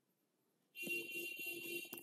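Faint scratching of a stylus writing on a tablet screen, with a thin steady whine over it, starting about three-quarters of a second in.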